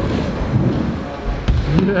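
BMX tyres rolling over plywood skatepark ramps, a low rumble, with a single sharp knock about one and a half seconds in.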